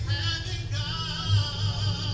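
A voice singing with music, holding long notes with a wavering vibrato.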